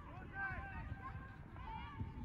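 Distant voices of players and spectators calling across the field, with an irregular low rumble of wind on the microphone.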